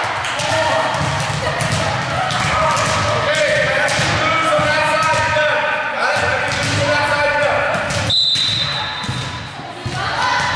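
Volleyballs being hit and bouncing on a hard gym floor, sharp smacks and thuds in the echo of a large hall, under several players' voices calling and chattering at once.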